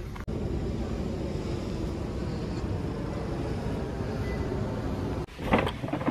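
Steady outdoor street noise with a low traffic rumble, cutting off abruptly near the end.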